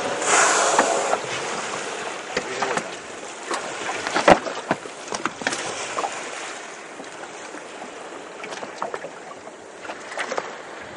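Water lapping and slapping against the hull of a small boat drifting on open sea, with wind on the microphone. A louder rush of noise fills the first second, and sharp knocks come now and then, the loudest about four seconds in.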